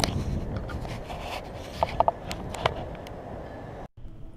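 Wind rumbling on the microphone, with a cluster of short squeaks and clicks about two seconds in as a window is being pulled shut. The sound cuts off abruptly just before the end.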